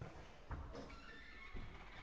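A football being kicked on an indoor five-a-side pitch: two dull thuds about a second apart. A thin, high-pitched sound drags on through the second half.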